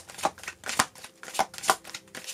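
A deck of oracle cards being shuffled by hand: a quick, irregular run of sharp card slaps and snaps, several a second.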